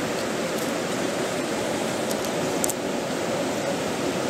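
Flowing stream water rushing steadily, an even hiss with no breaks.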